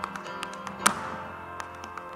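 Tap shoes striking a stage floor in quick, uneven taps, with one loud strike a little under a second in, over a recorded pop song.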